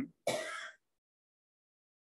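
A man's short breathy sound between spoken phrases, about a quarter second in and lasting half a second.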